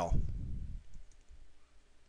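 A few faint computer mouse clicks about a second in, selecting an item from a dropdown list. The tail of a man's voice is heard at the very start.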